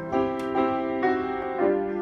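Grand piano being played: three new chords struck about half a second to a second apart, each left ringing into the next.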